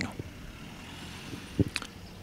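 A pause in speech: faint, steady outdoor background noise, with a brief click about one and a half seconds in.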